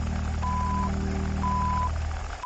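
Film countdown leader beeps: a short high beep once a second, twice here, each about half a second long, over a steady low hum with a fast even flutter.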